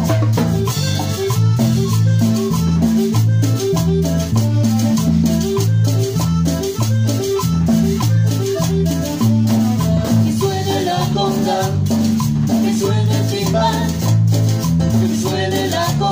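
Live Latin dance band playing an instrumental stretch: a rhythmic electric bass line under drums and a metal güiro scraped in a steady beat.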